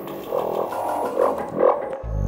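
Psytrance in a beatless breakdown: no kick drum or bass, only mid-range synth sounds that swell about three times.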